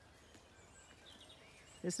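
Quiet outdoor ambience with a few faint, distant bird chirps.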